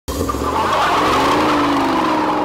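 Tyres squealing as a black KITT replica car pulls away, with its engine running underneath. The squeal starts suddenly and holds steady.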